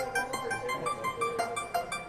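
Electric guitar picking a quick run of single notes, about four or five a second, without drums.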